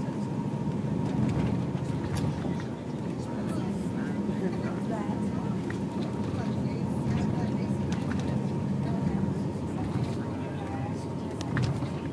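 Steady low rumble of a tour coach's engine and road noise heard from inside the passenger cabin, with a thin steady whine and faint passenger chatter.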